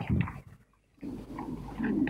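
A pause in a man's lecture: the tail of a spoken word, a brief silence, then a faint low vocal hum or murmur in the hall.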